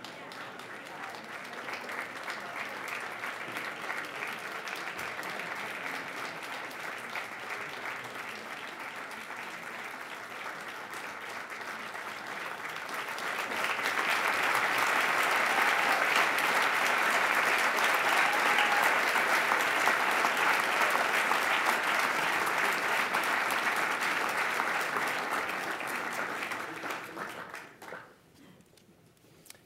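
Audience applauding, a dense patter of many hands clapping that swells much louder about halfway through and then dies away at the very end.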